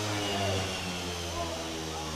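Steady low hum with a faint hiss over it, and faint voices in the background.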